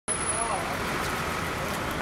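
Street noise: a steady low vehicle engine rumble with people talking in the background, and a thin high whine for about the first half second.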